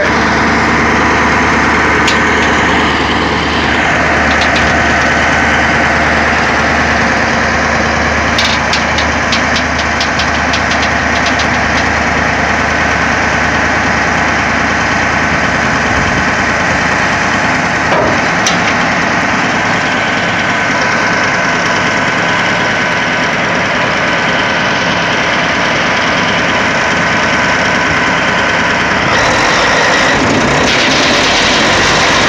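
The tub grinder's 550-horsepower Caterpillar diesel engine running steadily, with a thin steady whine over it.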